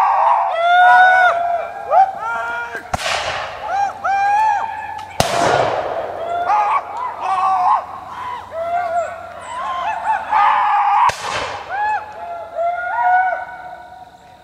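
Three black-powder musket shots, at about three, five and eleven seconds in, each with a trailing echo. Under them runs a steady chorus of short, high calls that rise and fall.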